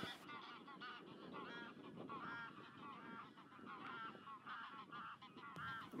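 A flock of greylag geese calling: many short honks, overlapping and faint.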